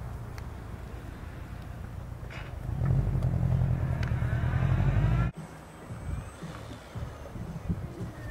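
Radio-controlled model airplane's motor and propeller running, much louder for about two seconds from around three seconds in, with a faint rising whine as it is run up. The sound breaks off abruptly at an edit, then continues quieter.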